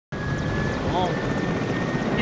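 Mil Mi-8-family transport helicopter running on the ground with its rotors turning: a steady, dense engine and rotor noise with a constant high-pitched whine over it.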